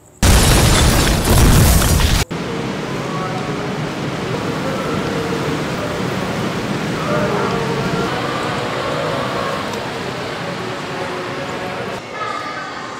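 A loud explosion sound effect lasting about two seconds, cutting off suddenly, signalling the planted bomb going off. It is followed by steady background noise with faint indistinct voices.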